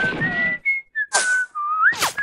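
Whistling: a single high tone wavering up and down in pitch and rising sharply near the end, among brief noisy clattering sounds.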